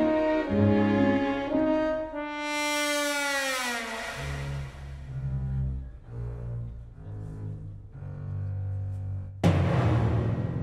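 Live symphony orchestra playing a comic film score: held brass and string notes, then a long downward slide in pitch, then short low bass notes, with a sudden loud hit near the end.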